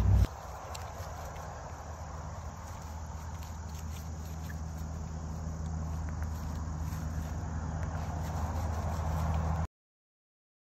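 Steady outdoor background noise: an even hiss with a low hum underneath, growing slightly louder and cutting off suddenly near the end.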